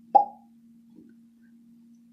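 A single hollow mouth pop, a finger snapped out of the mouth, with a short ring that dies away within about half a second.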